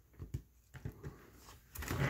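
Cardstock flaps of a handmade paper folio being flipped open by hand: a few faint taps and paper rustles, growing louder just before the end.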